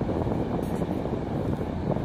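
Wind on the microphone: a steady low rumble with no clear pitch.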